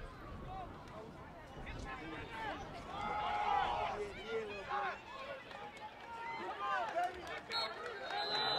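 Several voices shouting and calling at once on a football field, without clear words, swelling to their loudest about three seconds in.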